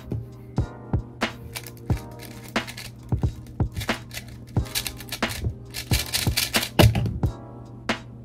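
Quick, irregular clicking and clacking of a YoCube 3x3 speed cube's plastic layers being turned during a speedsolve, with a louder knock near the end, over background music.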